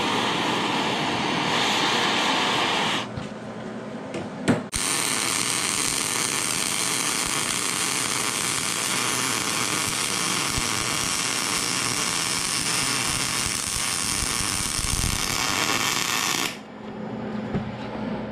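MAPP gas torch flame running with a steady hiss against the cast-steel differential housing and welded truss, post-heating the welds so they cool no faster than the casting. The hiss drops about three seconds in and comes back with a sharp click about a second and a half later, then cuts off shortly before the end.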